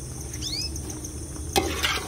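Birds chirping and calling, with short high chirps repeating and a couple of quick swooping notes, over a steady low hum. A sudden short burst of noise about one and a half seconds in is the loudest sound.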